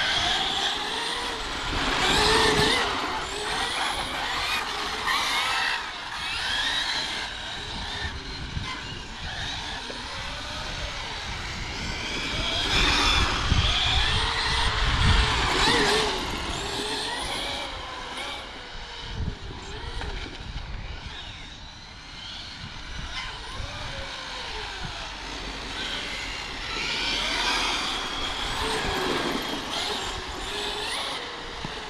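Electric brushless 6S radio-controlled cars running hard on asphalt. Their motors whine, rising and falling in pitch with each burst of throttle, and it gets louder as a car passes close by.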